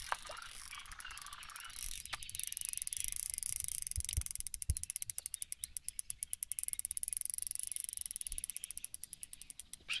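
Fishing reel ticking rapidly and steadily while a hooked fish is played, from about two seconds in until near the end, with a few soft knocks.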